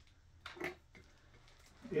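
A person's brief wordless vocal sound about half a second in, over a quiet room.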